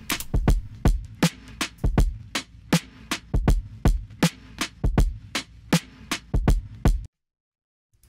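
Programmed electronic kick and snare pattern playing back on its own, without the drum break layer, with the kicks landing in close pairs. It stops abruptly about seven seconds in.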